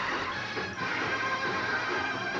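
College marching band playing, holding steady full chords, heard through a worn VHS copy of a TV broadcast.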